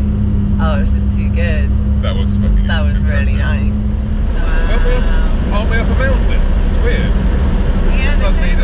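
McLaren 570S Spider's twin-turbo V8 running at a steady cruise with the roof down, under a heavy rumble of wind and road noise; its steady drone dips slightly about halfway through. Voices laugh and chatter over it.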